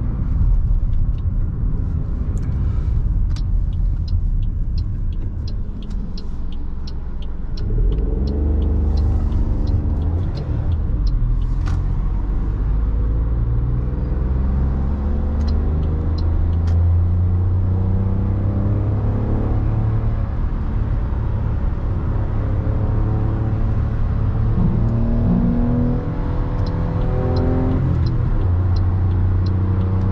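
Toyota Aygo's 1.0-litre three-cylinder petrol engine heard from inside the cabin, accelerating with its pitch rising in steps through the gears over steady road rumble. A light, evenly spaced ticking runs through the first third and comes back near the end.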